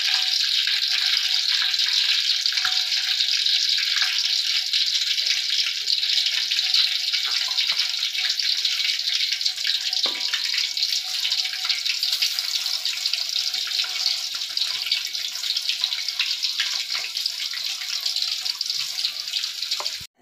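Cassava pieces deep-frying in hot oil, a steady dense sizzle and crackle.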